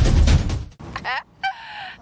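A loud music sting with a whoosh under the title-card graphic, cutting off suddenly under a second in. Then a brief falling animal call, followed by a shorter one.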